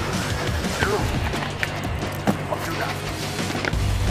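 Loud background music with a steady low beat, a voice mixed into it, and a sharp hit about two seconds in.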